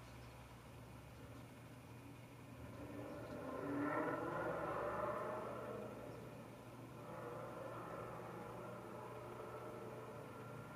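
Quiet room tone with a low steady hum, and a faint noise that swells about four seconds in and dies back.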